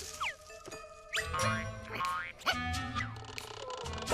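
Cartoon background music with comic sound effects: several quick rising and falling pitch glides.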